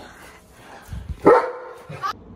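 A German Shepherd gives one loud bark a little over a second in.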